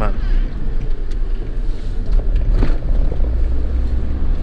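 Minibus driving on a country road, heard from inside the cab: a steady deep engine and road rumble with tyre noise, growing louder in the second half.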